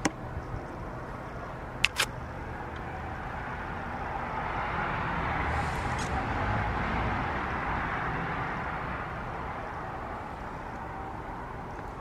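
A road vehicle passing by: a rushing noise that swells over several seconds and then fades away. There are a few sharp clicks at the very start and about two seconds in.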